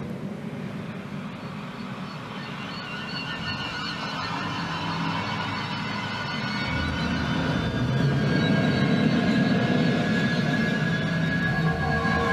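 Eerie suspense film score: a low drone under thin, high, wavering tones, swelling louder from about halfway through.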